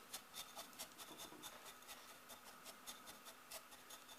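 Faint, irregular scratching and clicking of Seramis clay granules as a plastic water-level indicator is pushed down into the mineral substrate of a plant pot.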